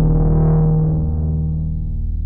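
A low, steady synthesizer tone: a sine wave run through a Klavis Flexshaper waveshaper. Its overtones brighten, peaking about half a second in, then mellow again as the shaping knob is turned and the wave is folded.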